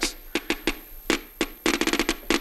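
Geiger counter clicking irregularly as it detects radiation from uranium ore. There are a few scattered clicks at first, and they come much thicker near the end.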